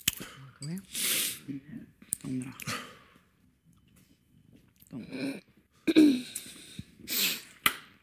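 A man crying quietly: about five sharp sniffs and heavy breaths, with short low sounds of voice between them.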